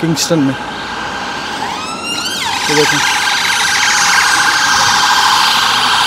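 An emergency vehicle siren winding up in a rising sweep about two seconds in, then holding a loud, fast warble until it cuts off suddenly at the end.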